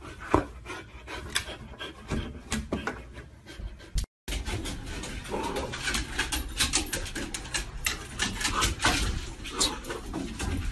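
Dog sounds up close, with many short knocks and scuffs; the sound drops out for a moment about four seconds in and comes back busier.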